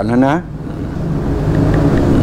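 A motor engine running with a steady low hum, growing louder over about a second and then holding.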